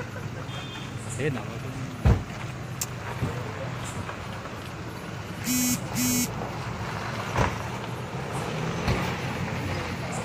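A car engine idling with a low, steady hum under the voices of a small crowd of men. A sharp knock sounds about two seconds in, and two short beeps come about half a second apart near the middle.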